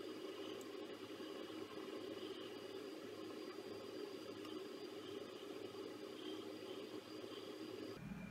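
Faint steady room tone: an even hiss with a low, steady hum.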